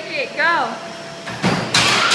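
A treadmill's motor and belt running with a steady whine while a person lets out a short exclamation. About one and a half seconds in, a loud clattering crash follows as the person falls off the moving belt.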